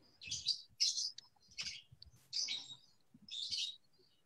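Small birds chirping in a run of short, high chirps, two or three a second, picked up through a video call's microphone.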